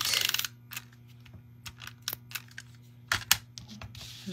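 Paper-crafting handling sounds: a short papery rasp at the start, then light clicks and taps as cardstock strips are handled and pressed down onto the tape-runner adhesive, with two sharper clicks a little after three seconds in.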